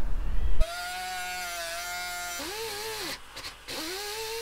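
Air-powered shears cutting corrugated metal roofing sheet. A steady high-pitched whine starts about half a second in and holds for about two seconds. Then come two shorter whines that rise and fall in pitch, with a brief dip between them.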